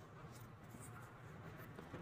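Near silence: faint room tone with a few faint, light ticks of small beads and thread being handled while beading on a needle.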